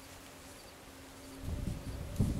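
A faint, steady buzzing hum. About a second and a half in, the hum gives way to rustling and handling noise from movement through dry brush.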